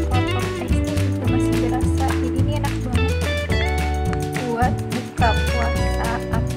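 Background music with a steady bass pattern and sustained melodic notes.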